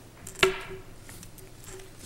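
A single sharp knock about half a second in, with a short ringing tone after it, over a steady low hum.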